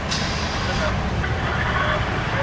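Car engine idling with a steady low rumble, and a brief hiss during the first second.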